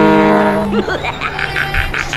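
Background music: a singer holds one long note over the backing track, breaking off about a second in, then a short rhythmic passage follows.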